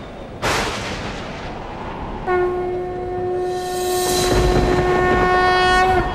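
A rushing swell about half a second in, then a single long horn-like note from a little past two seconds, held at one steady pitch for about three and a half seconds.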